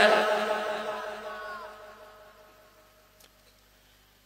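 A man's drawn-out chanting voice, amplified through a microphone, trailing off and fading away over about two and a half seconds, then near silence.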